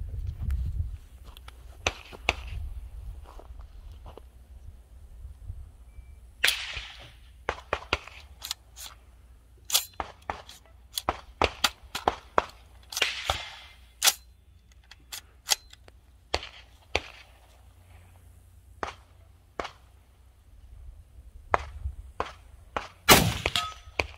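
Gunshots: a string of sharp, unevenly spaced cracks of varying loudness, the loudest about a second before the end, fired from a 300 Blackout short-barrelled rifle.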